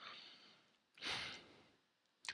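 A man's single short audible breath out, a sigh-like exhale about a second in.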